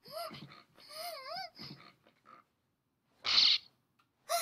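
An anime girl's high-pitched voice making wavering 'ooh' sounds, several short calls over the first two seconds with the pitch sliding up and down. About three seconds in comes a short, loud breathy burst of noise.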